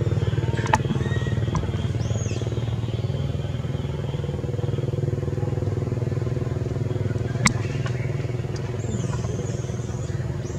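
A steady low engine hum, like a motor idling, with a few sharp clicks, the loudest about seven and a half seconds in, and short high chirps about two seconds in and again near the end.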